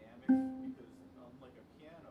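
A single note plucked on an electric archtop guitar, sounding suddenly and ringing out for about a second as it fades.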